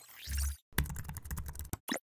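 Keyboard typing sound effect: a quick run of key clicks lasting about a second, then one separate click just before the end. It opens with a whoosh over a deep thud.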